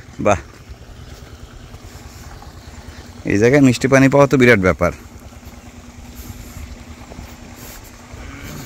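A man's voice, a short sound just after the start and then about two seconds of speaking or humming midway, over a faint steady low hum.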